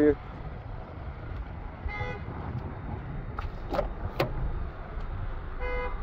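Steady low rumble of wind and handling noise on the microphone, with a few sharp clicks and knocks about three to four seconds in as a car's passenger door is unlatched and swung open. Two short tones, like a distant horn toot, come about two seconds in and just before the end.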